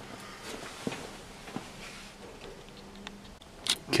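Quiet room noise with a few faint clicks, and a brief sharper sound shortly before the end.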